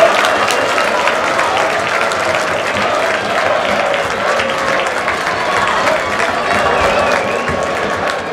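Stadium crowd cheering and clapping at a goal, with shouting voices mixed in; the noise slowly eases.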